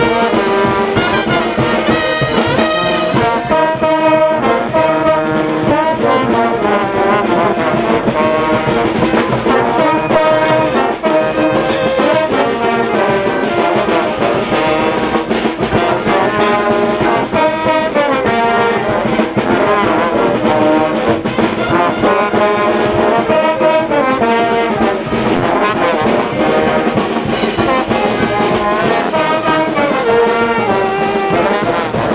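Brass band playing loudly and without a break: trumpets, trombones, saxophones and sousaphones carrying a melody over drum kit, congas and cymbals.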